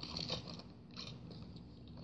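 Small cardboard diecast-car box handled and turned in the hands, giving scattered crackles and clicks, with a few sharper ones near the start and about a second in.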